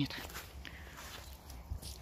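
Faint footsteps of a person walking along a wet garden path strewn with fallen leaves.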